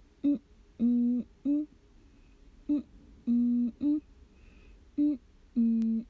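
A woman humming a short three-note phrase three times over: a short note, a longer lower note, then a short higher one.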